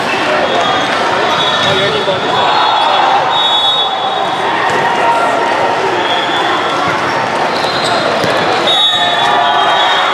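Din of a busy volleyball tournament hall: many players' and spectators' voices, with volleyballs being hit and bouncing on several courts, echoing in a large hall.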